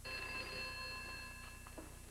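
Desk telephone bell ringing: a single ring that starts suddenly and fades away over about a second and a half.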